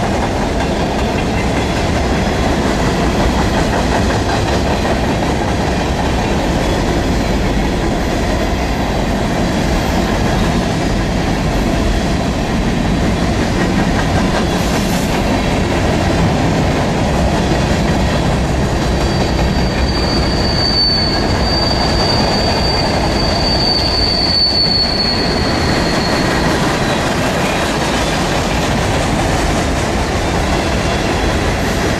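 Freight cars rolling past steadily, steel wheels running on the rails. About two-thirds of the way in, a high-pitched wheel squeal starts and holds steady for several seconds before fading out.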